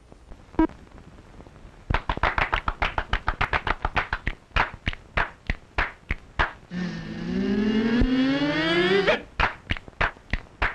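Soundtrack percussion: rapid sharp taps at about five a second. Near the end they give way to a sustained pitched tone that glides steadily upward for about two seconds, and then the taps resume.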